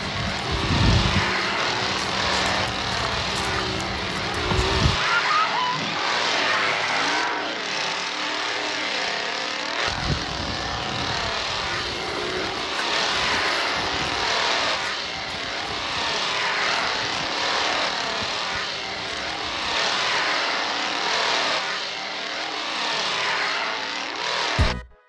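A chainsaw engine revving over and over, its pitch rising and falling every second or two.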